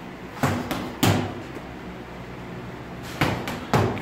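Gloved boxing punches landing in quick combinations: three smacks about half a second to a second in, then three more near the end, over a faint steady hum.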